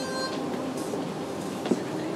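A train running on rails, heard as a steady rumbling noise. A held tone fades out just after the start, and a single sharp click comes near the end.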